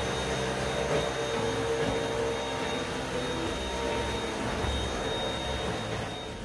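Handheld vacuum cleaner running steadily as it is worked over sofa upholstery: a loud rush of air with a thin high whine, ending near the end as music comes back in.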